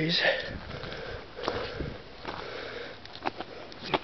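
A man sniffing and breathing while walking up a snowy forest slope, with irregular crunching footsteps on snow and debris.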